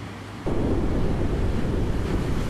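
Storm sound effect: a deep, steady rushing of wind and torrential rain that cuts in abruptly about half a second in.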